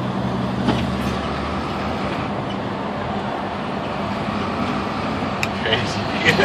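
Steady road and engine noise inside a moving car's cabin, with a low engine hum that fades out after about two seconds, and a couple of faint clicks.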